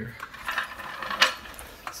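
Metal floor jack being moved, rattling and clanking, with one sharp clank about a second and a quarter in.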